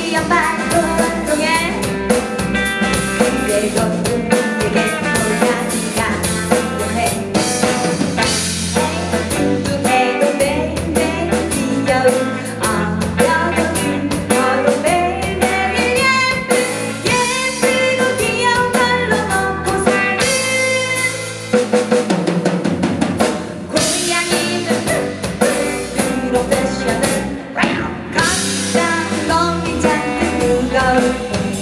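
Live indie rock band playing a short song: a female lead vocal over drum kit, electric guitars and bass. The low end drops away briefly a little past two-thirds through, then the full band comes back in.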